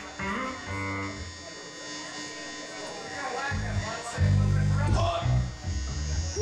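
Live punk/prog band playing: an electric guitar with a buzzing, distorted tone over a quieter passage, then about three and a half seconds in, loud low bass notes come in and the music gets louder.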